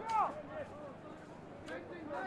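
Distant, overlapping shouts and calls from players and people around a rugby league field, short rising-and-falling voices with one louder call just after the start.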